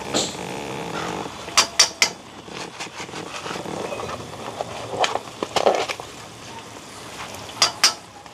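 Knife cutting into a foil sachet, the packet crackling in a few sharp bursts: three close together about a second and a half in, one near five seconds and two near the end. A low steady hiss lies underneath.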